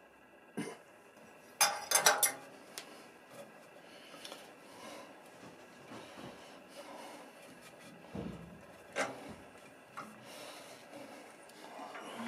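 Metal lathe parts and a chuck key clinking and clattering, loudest in a quick cluster about two seconds in, then quieter rubbing, bumps and a few sharp clicks as a wooden blank is handled and fitted onto the lathe chuck.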